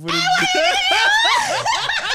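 A woman bursting into loud, high-pitched laughter that wavers up and down in pitch, then breaks into shorter, choppier laughs.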